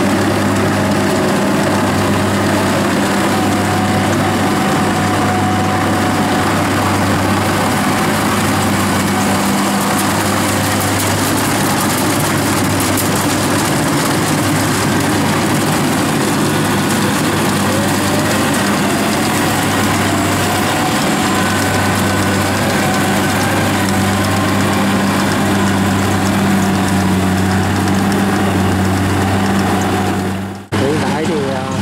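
Kubota combine harvester's diesel engine and machinery running steadily under load as it harvests rice in soft mud: a loud, even hum with a slight pulsing throb.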